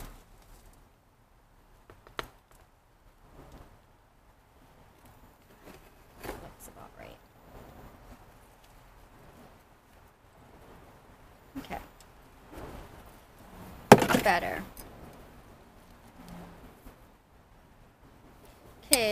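Potting by hand: a small metal trowel scooping potting soil into a metal bucket planter, and a plant in a ceramic pot being handled. It is heard as scattered scrapes and light knocks with quiet between, the loudest a little past two-thirds of the way through.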